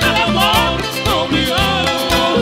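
Ecuadorian sanjuanito played by a live band: a male singer holds a sung melody over strummed guitars and a steady, even beat from the drums.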